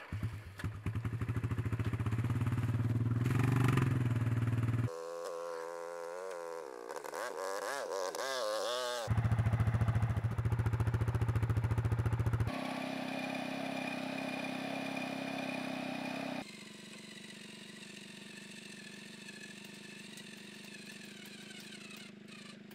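ATV engine running while towing a round bale on a chain from its ball hitch: a steady run, a stretch where the revs rise and fall, then steady again. The sound changes abruptly several times where the footage is cut.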